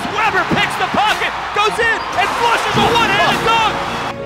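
Basketball sneakers squeaking on a hardwood court, many short high chirps in quick succession over arena crowd noise.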